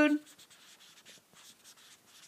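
The end of a spoken word at the very start, then faint scratching and tapping of a stylus writing on an iPad's glass screen.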